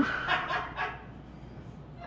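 A man's soft laughter, a few short breathy bursts that die away after about a second.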